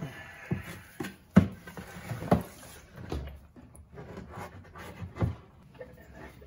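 A few separate knocks and bumps from a large plastic bin and a plastic cup being handled as the bin is tilted. The loudest knock comes about a second and a half in, and another near the end.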